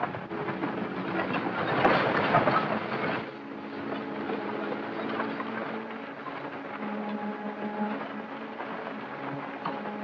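A horse-drawn stagecoach rattling along, loudest for about the first three seconds, under orchestral film score music with held notes that carries on once the rattle fades.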